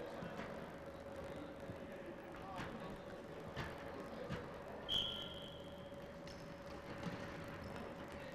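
Referee's whistle, one clear blast about five seconds in, signalling the kickoff restart after a goal. It comes over a few faint knocks of the ball and players' feet on a wooden sports-hall floor and a steady faint hum.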